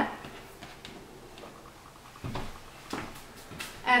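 Quiet room tone with faint handling noise: soft rustles and a couple of light knocks about two and three seconds in, as someone clears crumbs from a countertop and moves about.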